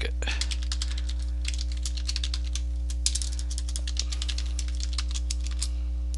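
Typing on a computer keyboard: runs of quick, irregular keystrokes with short pauses between them, over a steady low electrical hum.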